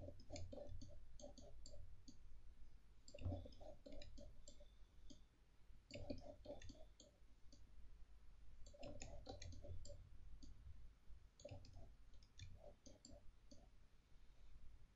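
Faint computer mouse clicking: groups of several quick clicks every few seconds, with short pauses between them.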